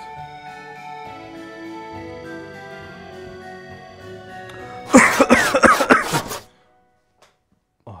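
Background music with sustained tones, then about five seconds in a loud burst of coughing and throat-clearing lasting about a second and a half. The music stops with it.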